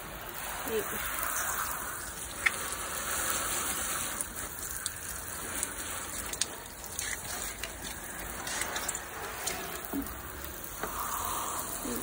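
Water from a garden hose spray nozzle spattering onto a car's paint, spoiler and rear glass during a rinse: a steady hiss of spray with scattered sharp ticks.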